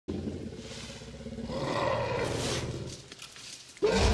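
Film sound effect of the Jurassic Park Tyrannosaurus rex: a low growl over the hiss of rain, swelling about halfway through and then fading. A much louder roar starts suddenly just before the end.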